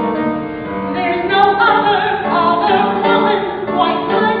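A woman singing a musical theatre song with vibrato over instrumental accompaniment, the voice rising in strength about a second in.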